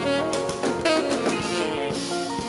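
Small jazz band playing: a saxophone line over a drum kit with cymbal strikes and a plucked-string accompaniment.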